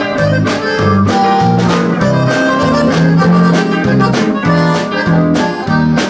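Live band music with a button accordion leading over guitar and keyboard. Under it run a bass line and a steady beat of about two hits a second.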